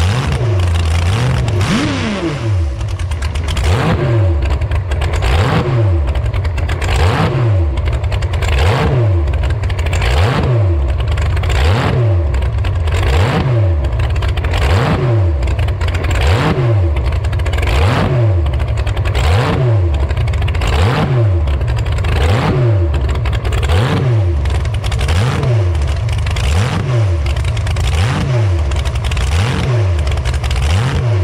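T-bucket hot rod engine running and revved up and down over and over, its pitch rising and falling about once a second.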